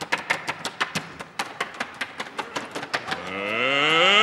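Fast, even percussion strokes, about six a second, from a Russian folk choir's dance number. From about three seconds in, voices join in a long rising whoop that climbs in pitch and grows louder.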